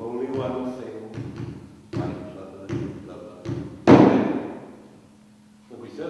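A man's voice declaiming the closing lines of a cywydd in a rhythmic, percussive delivery, punctuated by sharp thumps. The last and loudest, about four seconds in, rings out and dies away over about a second.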